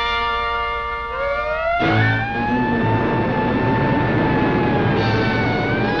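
Cartoon soundtrack music with a sound effect: a held chord, then a tone gliding upward about a second in, and from about two seconds a loud rushing whoosh under a sustained high tone as the character takes flight.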